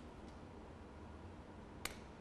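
Quiet studio room tone with a faint steady hiss, broken by one short sharp click near the end.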